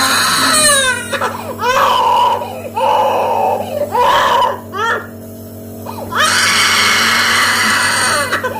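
A young child crying and screaming in repeated wails with short breaks between them; the longest and loudest wail comes near the end.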